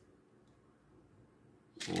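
Near silence, with a faint small click at the start as a glass fuse is set into an inline fuse holder by hand.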